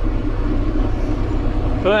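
John Deere 7810 tractor's six-cylinder diesel engine running steadily at road speed, heard from inside the cab as a constant low drone.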